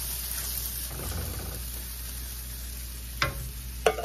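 Sliced onion and ginger sizzling in an aluminium wok as coconut milk is poured in and stirred with a wooden spoon, the frying sizzle softening under the liquid. Two sharp knocks near the end.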